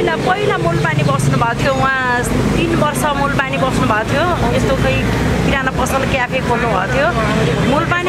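A woman talking animatedly in Nepali, her voice rising and wavering. A steady low rumble of street traffic runs underneath.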